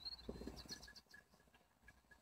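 Near silence, with a brief faint chirp at the very start and a few faint short ticks during the first second.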